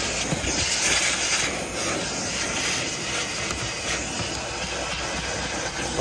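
Vacuum cleaner running as its hose nozzle sucks dust and grit from a car's floor carpet; the hiss of the suction swells and dips as the nozzle is moved about.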